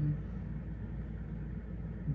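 A brief "mm-hmm" at the start, then a steady low hum of room tone through the microphones.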